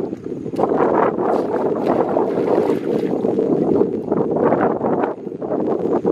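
Shallow muddy water splashing and sloshing in irregular surges as people wade through it and grope in it by hand.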